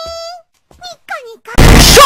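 A high-pitched anime girl's voice in short bursts. About one and a half seconds in, it cuts to an abrupt, extremely loud, distorted and clipped shouting voice: an ear-rape meme jump.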